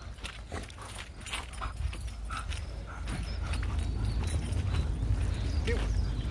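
Footsteps on grass with scattered light clicks and knocks, over wind rumbling on the microphone that grows stronger about halfway through.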